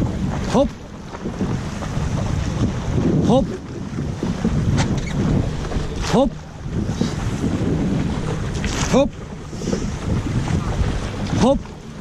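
A llaut rowing crew pulling together at sea: oars dipping and splashing and water rushing along the hull, with wind buffeting the microphone. The strokes come in a steady rhythm of about one every three seconds.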